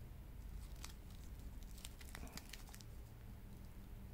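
Faint, scattered crinkles and light crackles of the thick clear plastic film wrapped around a wristwatch as it is handled.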